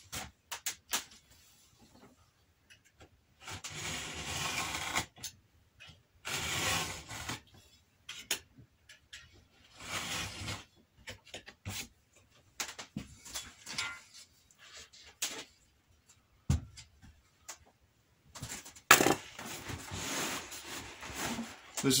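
A utility knife slicing through heavy leather along a straightedge, several separate rasping strokes each about a second long, with small clicks between them. Near the end comes a sharp click and a longer stretch of the leather rubbing and sliding on the wooden bench.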